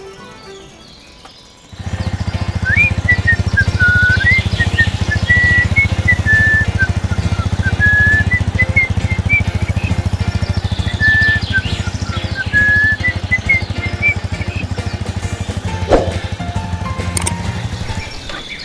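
A motorcycle engine sound effect running steadily, starting suddenly about two seconds in, with a whistled tune over it.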